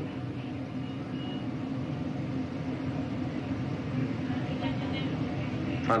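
A steady low rumble of background noise with faint voices in it.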